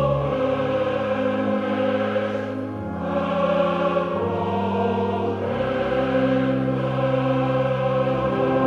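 An opera chorus sings slow, sustained chords with instrumental accompaniment, the harmony shifting every few seconds over a changing bass.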